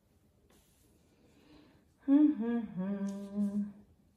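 A woman humming a few notes, starting about halfway in: a short falling note, then a held low note.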